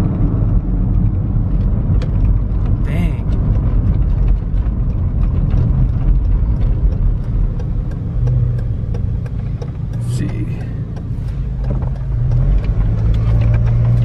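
Car interior driving noise: steady engine and road rumble, with the engine's hum growing stronger about eight seconds in and again near the end.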